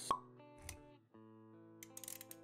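Intro music with held notes, and a sharp pop sound effect about a tenth of a second in, followed by a softer low thud and a few quick clicks near the end: motion-graphics intro sound effects.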